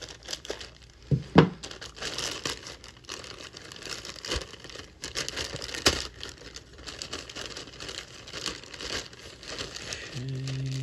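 Thin clear plastic bag crinkling as it is snipped open with scissors and a plastic model-kit sprue is pulled out of it. A few sharp clicks stand out, the loudest about a second and a half in and another near six seconds.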